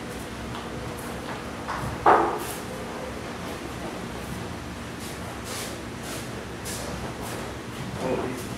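Movement on a dojo's padded mats, with cloth rustling and bare feet shuffling over a steady room hum. One sudden loud thump about two seconds in, dying away quickly.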